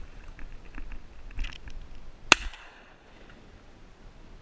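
A single shotgun shot a little past two seconds in, a sharp crack with a short ringing tail, preceded by a few lighter knocks and rustles.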